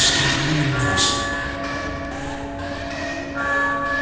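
Beatless breakdown in a hard electronic dance music mix: several held synth tones layered into a steady drone, with hissing noise sweeps at the start and again about a second in.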